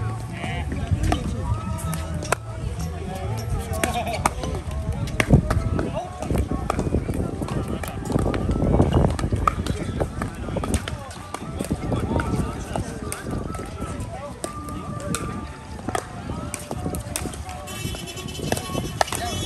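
Sharp pops of pickleball paddles hitting the ball, scattered through a steady mix of background voices.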